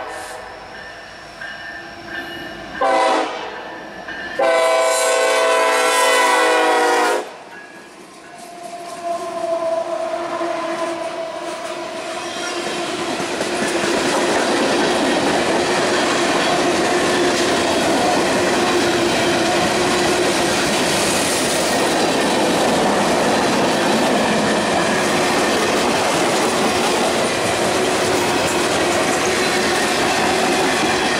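Norfolk Southern freight train's lead locomotive, an EMD SD70ACe, sounding its horn for a grade crossing: a short blast about three seconds in, then a long blast held to about seven seconds. The locomotives then pass and the freight cars roll by, with steady, loud wheel-on-rail noise.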